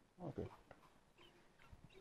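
Near silence: quiet studio room tone after a short spoken 'okay', with a few very faint short chirps.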